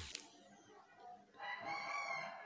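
A drawn-out, pitched animal call in the background, about a second long, starting past the middle.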